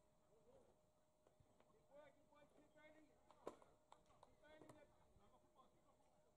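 Near silence with faint distant voices and a single sharp click about three and a half seconds in.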